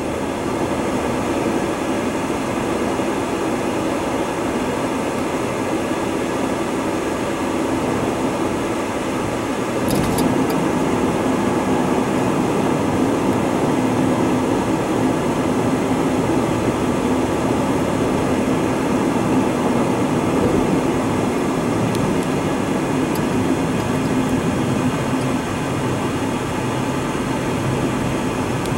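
Steady road noise inside a moving car's cabin: tyres and engine running at freeway speed, with a brief click about ten seconds in.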